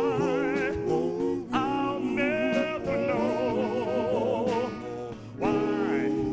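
Male lead vocalist singing live into a microphone with a wide vibrato, over a backing band with electric guitar. The voice breaks off briefly about five seconds in and comes back in at a higher pitch.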